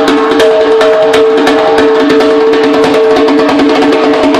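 Remo djembe played solo by hand in a dense, rapid run of strokes, with the drumhead ringing at a steady pitch underneath.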